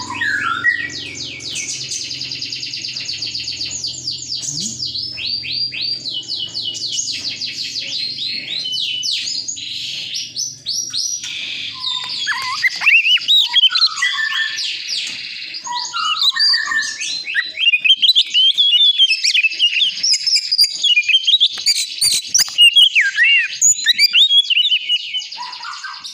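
White-breasted Oriental magpie-robin (kacer dada putih) singing: first a long run of rapid, evenly repeated falling notes, then, from about halfway, louder and more varied whistled phrases.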